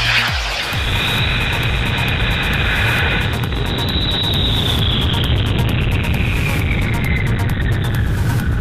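Student-built experimental rocket lifting off its launch rail: the motor starts suddenly with a rushing roar and a low rumble, and a high whine holds for several seconds, then falls slowly in pitch near the end. Background music plays under it.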